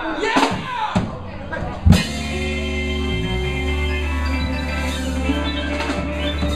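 Live rock-and-roll band of electric guitar, drum kit, bass, saxophone and trumpet playing a few punctuating hits. A loud accent comes about two seconds in, and the band then holds a long sustained chord, the song's final chord.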